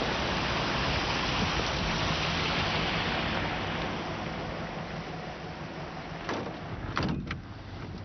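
A steady rushing noise, like wind on the microphone, fades after about halfway. It is followed near the end by a few sharp thumps from the door of a vintage car being shut.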